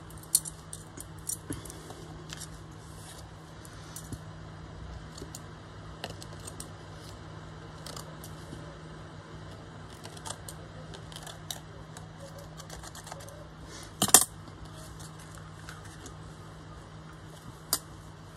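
Small metal craft scissors snipping tulle netting and being handled, a scatter of light clicks and taps, with a louder clack about two-thirds of the way through and another near the end.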